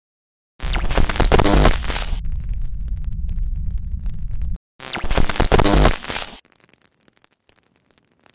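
Glitch logo-sting sound design in two loud bursts of crackling digital noise, each starting with a short rising whistle. The first burst gives way to a low rumbling drone, and the second dies away into faint scattered crackles.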